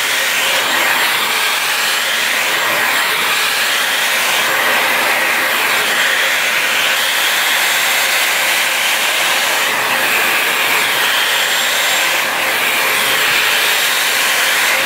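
Dyson Supersonic hair dryer running steadily, blowing air through hair and a round brush: a loud, even rush of air.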